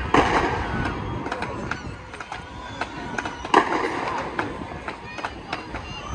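Fireworks going off: a sharp bang right at the start and another about three and a half seconds in, with smaller cracks and crackling between. Spectators' voices are heard throughout.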